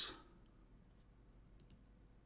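Quiet room tone with a few faint, scattered clicks, two of them close together past the middle.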